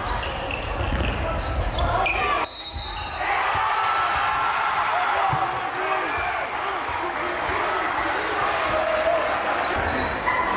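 Live sound of a basketball game in a gymnasium: a basketball bouncing on the hardwood court, with voices from players and the crowd echoing in the hall.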